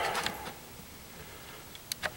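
Quiet room tone with a few faint clicks, one of them just before the end.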